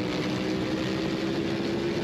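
BMW F 900 R's parallel-twin engine running hard at steady high revs, heard onboard the bike, holding one steady note.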